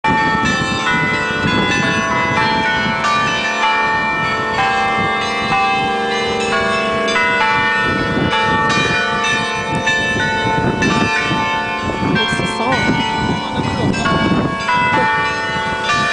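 Outdoor bell sculpture, a cluster of tuned bells mounted on twin poles, ringing its hourly chime: strike follows strike on different notes, each left ringing over the next.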